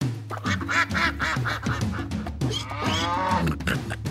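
A quick run of cartoon duck quacks over the bright intro music of a children's song, with a longer rising-and-falling animal call near the end.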